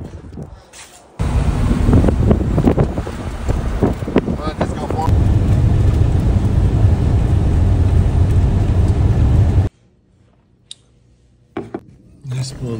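Steady road and engine noise of a vehicle driving at speed, heard from inside the cab, with a deep rumble. It starts about a second in and cuts off abruptly near the end.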